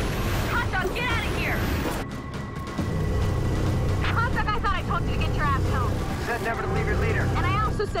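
Sci-fi soundtrack mix: a steady low rumble of a Viper starfighter in flight under music, with short bursts of indistinct voices, like radio chatter, coming and going.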